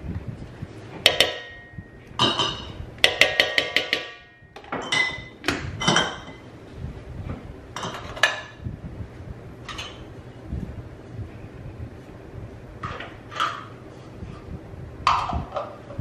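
A spoon knocking and clinking against a large stainless steel mixing bowl: a few ringing metallic strikes, then a quick run of about half a dozen taps, then scattered softer knocks.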